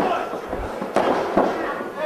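A referee's hand slapping the wrestling ring mat in a pin count: two sharp slaps about a second apart, over a hall's background noise.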